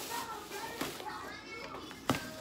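Background voices of children talking and playing.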